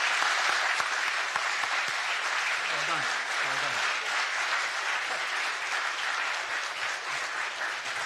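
Steady applause from many people clapping.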